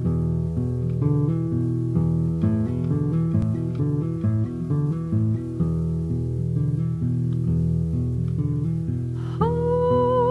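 Instrumental intro of a blues song: a guitar plucking a run of notes over a low bass line. Near the end a single long note with vibrato comes in over it.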